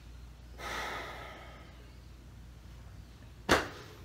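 A person's breathing during a martial-arts form: a long, fading exhale about a second in, then one short, sharp, loud burst near the end.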